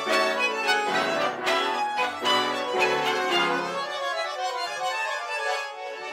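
Tango ensemble music led by bandoneon, with violins playing along. The bass drops out about four seconds in, leaving the higher lines.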